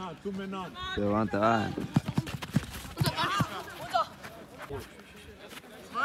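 A man shouting encouragement in Spanish ("¡Venga!"), with other voices calling out, over an outdoor youth football match. About two seconds in comes a quick run of short, sharp knocks and thumps from play on the pitch.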